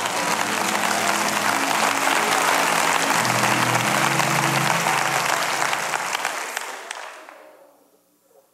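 Audience applauding, with held music chords sounding underneath. The applause and music fade away over the last second or so.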